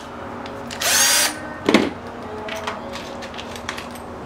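Compact Milwaukee cordless drill run briefly, a short whine lasting about half a second, followed a moment later by a sharp click.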